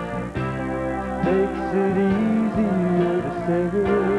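Live country ballad: a band with guitars prominent, with a male voice holding long notes with a wavering vibrato.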